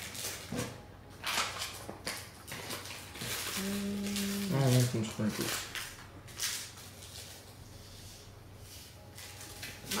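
Plastic sprinkle bag crinkling and sprinkles scattering onto a cookie, in short irregular rustles. A person hums a short held note and murmurs about four seconds in.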